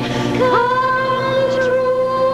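Music: a singer's voice slides up into one long held note about half a second in, over soft accompaniment.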